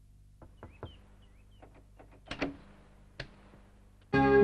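Wooden door being unlatched: a few light taps, then louder clicks and clunks of the handle and latch. The loudest come about two and a half seconds in, with one more a little later.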